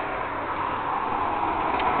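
A steady background hiss with no distinct source, and a faint click near the end.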